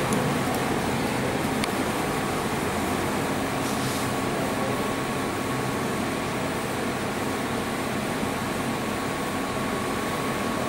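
Steady room hum of a running cooling fan, with a faint steady high whine over it.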